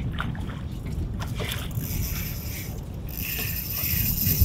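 Water lapping and sloshing against the hull of a small flats boat, with wind rumbling on the microphone. A few faint ticks come from the spinning reel as a hooked snook is played.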